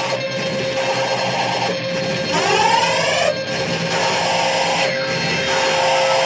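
Live electronic noise music: a dense, harsh wall of noise over a steady droning tone, its hiss cutting out briefly about every second and a half. A warbling sweep of rising tones passes through the middle.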